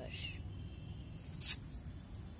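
A brief crisp rustle about one and a half seconds in, over a steady low outdoor rumble, with a few faint, short high-pitched chirps.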